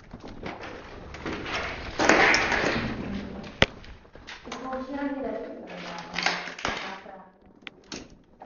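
Indistinct, low voices, with a rustling burst about two seconds in and a single sharp click about a second after it.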